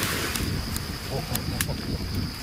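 Low, irregular rumble of wind and handling noise on the camera microphone as the camera swings quickly, with a burst of hiss at the start, a few faint clicks and a faint steady high whine.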